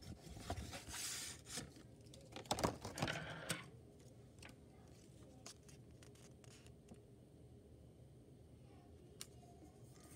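Paper and cardboard packaging rustling and scraping as a sheet is pulled from a model-train box, for the first three or four seconds, then quiet handling with a few faint clicks.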